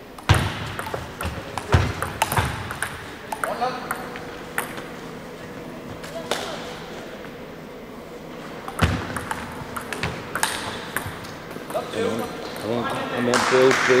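A table tennis ball clicking off bats and the table during rallies: a quick run of hits in the first few seconds, then single hits spaced a second or more apart. Voices rise near the end.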